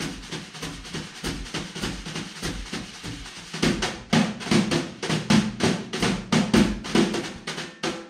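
Jazz drum kit taking a solo break: a dense run of snare and cymbal strokes that grows louder and heavier about halfway through, with drum hits landing on the beats.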